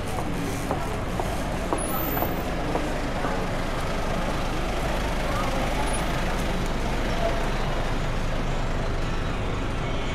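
Steady low rumble of a delivery truck idling in a street, with passers-by talking.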